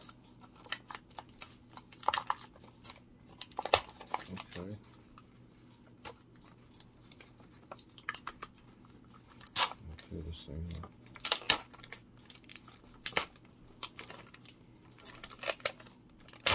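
Plastic food-kit packaging crinkling and crackling in irregular bursts as it is handled and pulled open.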